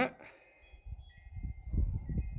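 A low, uneven rumble on the microphone that starts about a second in and grows, with faint steady high ringing tones in the background.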